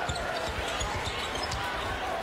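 Basketball arena game sound: a steady crowd hubbub with a basketball being dribbled on the hardwood court, in repeated low thumps.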